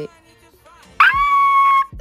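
A woman's high-pitched excited squeal: it starts suddenly about a second in and holds one shrill note for almost a second before cutting off.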